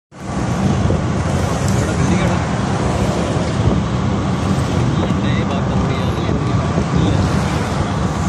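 Steady engine rumble and road noise heard from inside a moving vehicle.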